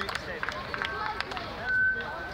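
Crowd of people talking among themselves, several voices overlapping, with a brief high steady tone near the end.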